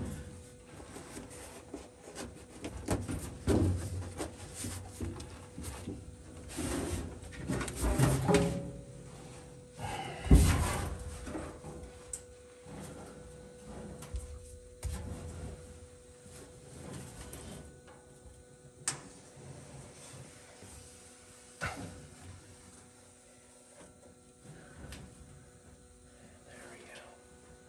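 Stiff paperboard pattern being handled and pressed into place against sheet-metal body panels: irregular rustles, scrapes and knocks, the loudest knock about ten seconds in, growing quieter toward the end.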